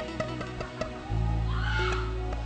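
Soft worship music with plucked guitar notes, joined by a bass about a second in. Near the end a short, high, wavering cry slides up and back down over the music.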